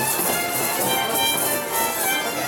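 Slovak folk dance music led by violins, playing steadily as the accompaniment to a couples' spinning dance.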